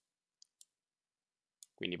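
A few faint, short computer mouse clicks: two close together about half a second in and one more shortly before the end.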